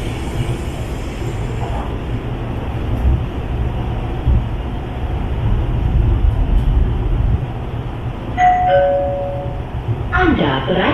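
Hyundai Rotem metro train running, heard from inside the passenger car as a steady low rumble. About eight and a half seconds in, a two-note falling chime sounds: the onboard signal that comes just before the station announcement.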